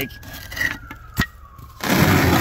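A sharp click about a second in, then near the end a loud, rough scrape as a concrete cinder block is pulled out from under a rough-sawn wooden shelf.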